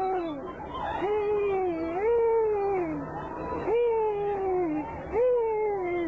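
A high-pitched voice making a string of long, drawn-out wails, about five in all, each sliding up at the start and falling away at the end.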